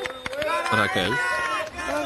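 Speech: several voices of a party crowd talking and exclaiming over one another.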